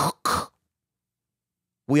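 A man's short, breathy throat-clearing sound, then dead silence for more than a second.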